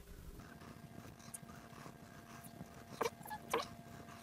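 Soft handling noise of a rubber timing belt being pressed into a plastic belt-tensioner slot, with two short clicks about three seconds in, half a second apart, over a faint steady hum.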